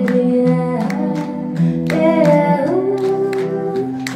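A woman singing a slow melody while strumming an acoustic guitar, live through a microphone. About halfway through she holds one note with a wavering pitch.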